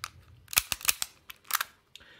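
Replica Beretta BB pistol being handled, its action worked: a series of sharp mechanical clicks in clusters about half a second, just under a second, and a second and a half in.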